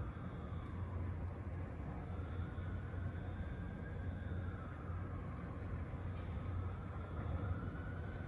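An emergency vehicle siren wailing faintly, its pitch rising and falling slowly every few seconds, over a steady low rumble.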